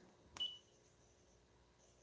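Near silence: room tone, with one faint short click and a brief high ping about half a second in.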